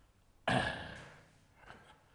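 A man's short, throaty vocal noise about half a second in, starting sharply and fading away over about half a second.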